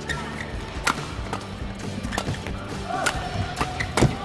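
Badminton rackets striking a shuttlecock back and forth in a fast doubles rally: a quick run of sharp cracks, about two a second.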